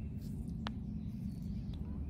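Steady low outdoor background rumble, with one faint click about two-thirds of a second in.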